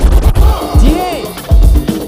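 Hip hop break beat with record scratching: quick up-and-down scratch sweeps over heavy bass kicks.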